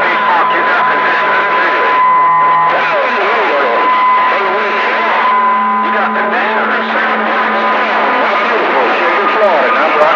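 CB radio receiver audio on channel 6 (27.025 MHz). Several stations transmit at once, so the voices overlap into garbled, unintelligible chatter, with steady heterodyne whistles running over them.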